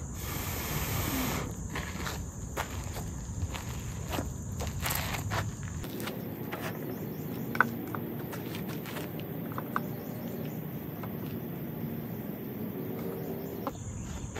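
Light rustling and small clicks of hands handling pieces of char cloth and reaching into a metal tin, with one sharper click about halfway through, over steady insect chirping.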